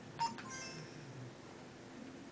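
Quiet room with a brief click about a quarter second in, followed by a faint short tone.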